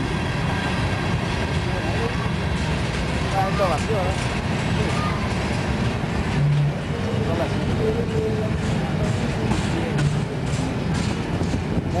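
Freight train passing at close range: a steady rumble of steel wheels rolling on the rails as covered hoppers and then intermodal well cars go by.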